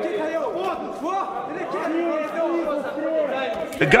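Men's voices talking and calling out, with a louder, closer voice starting just before the end.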